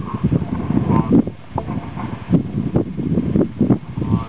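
Wind buffeting the camera microphone in irregular low gusts.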